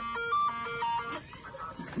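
A short electronic tune of quick stepped notes from the compilation clip, lasting about a second, then quieter.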